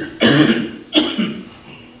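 A man coughing to clear his throat: two short coughs into his fist, about three quarters of a second apart.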